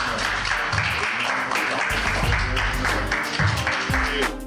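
Congregation clapping and applauding, with church music playing under it; deep bass notes come in about two seconds in.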